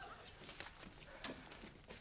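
A few faint, scattered footsteps and taps on a wooden floor, in a quiet room.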